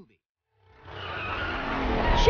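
Animated-film vehicle sound effect: a rushing, skidding road noise with a low rumble that starts about half a second in and swells steadily louder.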